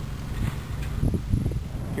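Wind rumbling on the microphone, with a few soft, irregular knocks of footsteps and handling on the deck.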